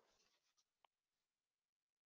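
Near silence: a pause in a webinar recording with only a faint noise floor.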